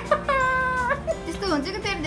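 An infant squealing in high-pitched vocal notes: one steady held note, then a few short wavering squeals near the end.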